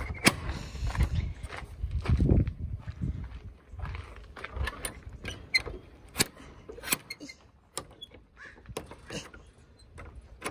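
A wooden gate being handled, with low knocks and thuds, then its metal barrel bolt slid by hand, giving a run of sharp metallic clicks and clacks.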